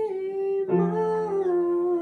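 A young woman singing the song's closing held note, steady then falling slightly in pitch, over piano; a piano chord is struck under it less than a second in.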